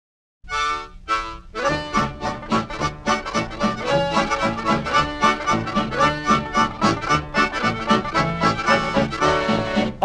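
Instrumental introduction of a 1943 swing-band record. After a moment of silence, two held chords sound; then, about a second and a half in, a bouncy band rhythm sets in with bass notes on every beat.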